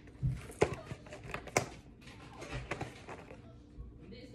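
Clear plastic toy packaging crackling and clicking as fingers pick and pull at the tape on it: several sharp crinkles in the first two seconds, then quieter handling.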